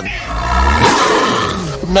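A leopard's loud, ferocious growl, played as a sound effect: one long rasping snarl with a deep rumble in its first second, lasting nearly two seconds.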